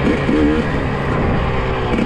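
Enduro motorcycle engine running steadily at low speed while riding, over a dense rushing noise on the onboard microphone.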